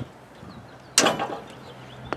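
A single sharp metallic click about a second in, with a brief ringing tail, from a socket wrench working the oil drain plug on a snow blower engine.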